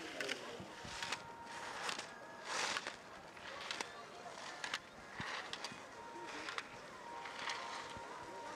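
Faint course sound of a slalom run: ski edges scraping through turns on hard snow in short swishes, with sharp knocks as the skier strikes the hinged gate poles.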